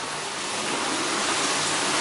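Steady rushing noise of water flowing through a micro-hydro plant's turbine bunker down to its Francis turbine.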